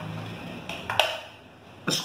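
A few light clicks and knocks of a plastic measuring scoop against the inside of a formula tin as it is fished out of the powder, the sharpest about a second in and another near the end.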